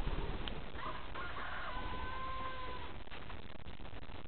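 One long, drawn-out bird call about two seconds long, held at a steady pitch. It starts about a second in.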